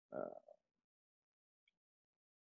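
A man's brief, hesitant "uh" in the first half-second, then near silence.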